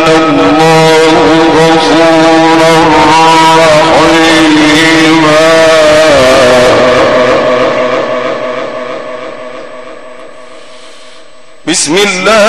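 A man's chanted Quran recitation: one long, ornamented note held with a wavering pitch, then slowly fading away over several seconds. A new phrase starts just before the end.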